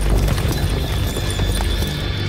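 Horses' hooves clip-clopping in a dense, continuous run of strikes, laid over a music score.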